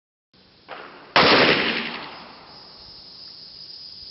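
A single pistol shot: a 5.7x28mm round from an FN Five-seveN fired into a block of modeling clay, about a second in, fading out over about a second. A fainter sharp sound comes just before it.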